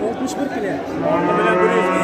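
A cow mooing: one long, steady, low call that starts about a second in and carries on past the end, over the talk of a crowd.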